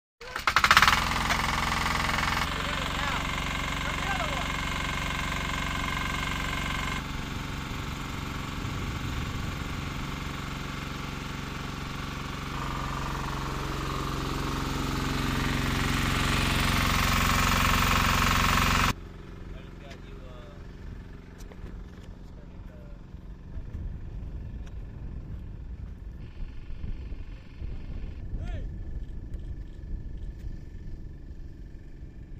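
A portable fuel pump's engine running steadily, with voices over it, growing a little louder before cutting off abruptly about two-thirds of the way through. After that, a much quieter open-air background with a few faint knocks.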